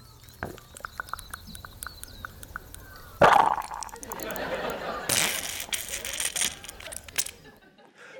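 A field recording of giant Gippsland earthworms slurping and gurgling as they withdraw into their wet burrows, played back over a hall's loudspeakers. The wet clicks are punctuated by a sudden loud swoosh about three seconds in and a gushing stretch later on, and the recording stops shortly before the end.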